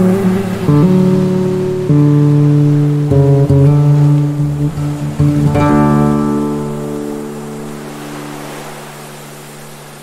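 Slow, gentle acoustic guitar music: single plucked notes and chords in the first half. About five and a half seconds in, a chord is struck and left to ring, fading away over the last few seconds.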